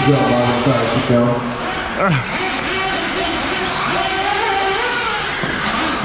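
A race announcer's voice over a public-address system, with music behind it, echoing in a large indoor hall.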